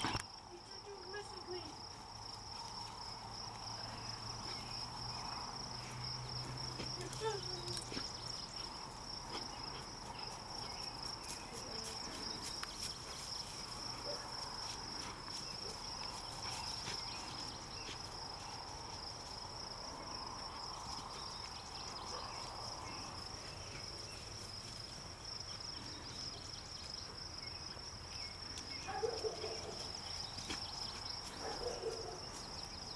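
Crickets trilling in a steady, high-pitched chorus, with scattered faint rustles and clicks from a dog pushing through tall brush.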